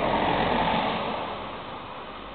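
A car passing close by on a snow-covered road. Its tyre and engine noise is loudest in the first second, then fades as it drives away.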